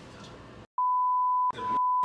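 Censor bleep edited onto the soundtrack: a steady, high-pitched single-tone beep with the rest of the audio cut out beneath it. It comes in about a second in as one short bleep, then a second bleep starts about halfway through and runs on past the end.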